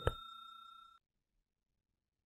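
A single computer mouse click, over a faint steady high-pitched electronic whine that cuts off abruptly about a second in, followed by silence.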